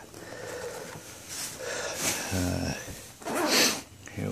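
Soft handling noise, then a short low grunt from a man about halfway through, and a loud short hiss near the end.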